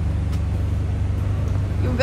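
A steady low rumble with no distinct events in it, cutting off suddenly just after the end.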